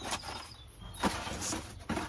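Thin clear plastic food container being opened and handled: a few sharp plastic clicks with light crinkling between them.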